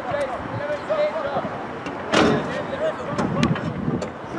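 Voices of players calling and shouting across an outdoor football pitch, with a single sudden loud noisy burst about two seconds in.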